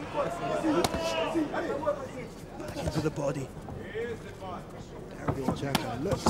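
Arena noise of voices calling out around a boxing ring, with sharp slaps of gloved punches landing about a second in and several more near the end.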